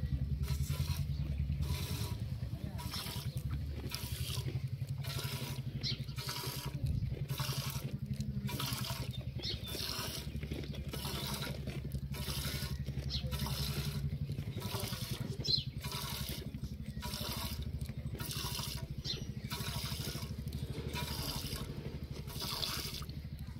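Goat being hand-milked into a stainless steel pot: rhythmic squirts of milk hitting the metal, about two a second, over a steady low hum.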